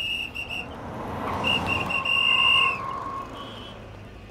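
A traffic policeman's whistle: a run of short blasts, then one long blast about a second and a half in. Under it, a car pulls up.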